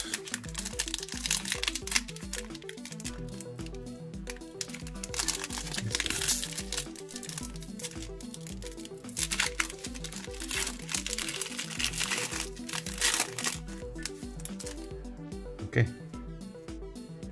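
Foil trading-card pack wrapper crinkling and tearing as it is peeled open, in several bursts, over background music with a steady beat.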